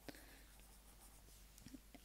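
Faint scratching of a pencil writing on lined spiral-notebook paper, with a light tick or two.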